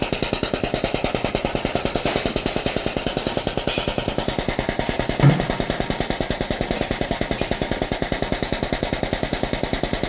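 Air-operated double-diaphragm pump running fast, giving a rapid, even beat of several strokes a second as it draws flush liquid up the suction hose from a bucket and pushes it through the filter. A single louder thump comes a little past the middle.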